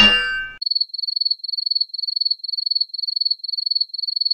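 A metal axe clangs off a head with a short metallic ring, then a cricket-chirp sound effect repeats about twice a second, a thin high trilling chirp.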